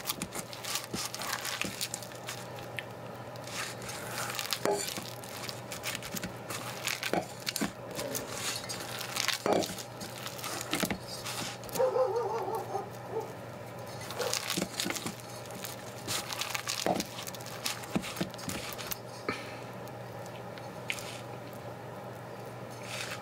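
Hands kneading and squeezing grainy, seasoned Impossible Burger plant-based mince in a stainless steel bowl, with irregular short crackles and squelches as the mixture is worked between the fingers.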